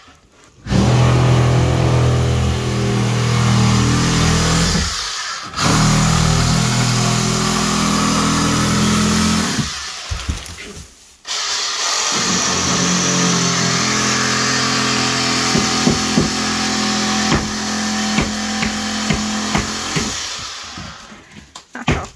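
An electric power tool running hard in three long stretches with short breaks, its motor pitch wavering as it works through drywall and pipe, with a few sharp clicks about two-thirds of the way through.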